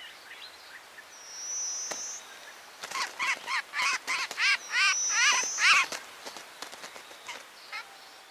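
Wild bird calls: two high, thin whistles, and in the middle a quick run of about eight short chirping notes, each rising and falling in pitch.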